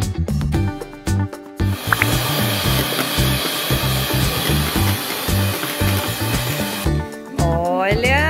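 Electric mixer running as it whips cream into chantilly, starting about two seconds in and stopping about a second before the end, over background music with a steady beat.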